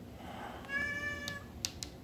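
Domestic cat giving a single meow, a bit under a second long and fairly steady in pitch, followed by a few sharp clicks.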